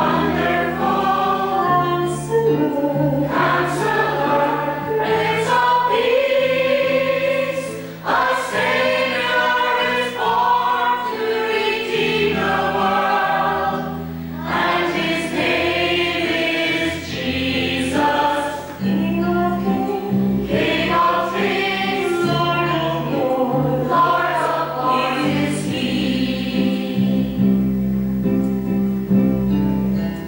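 Church choir singing, with long held low notes sounding beneath the voices.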